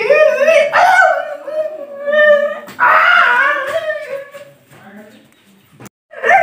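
A man's voice crying out in drawn-out, wavering, wailing cries with sliding pitch, dog-like in character, dying away about two-thirds of the way through.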